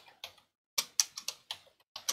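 Computer keyboard keys clicking as a short word is typed: about seven separate keystrokes, with a brief pause before a quick run of them.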